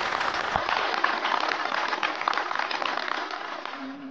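Audience applauding: a dense, steady patter of many hands clapping that eases off slightly near the end.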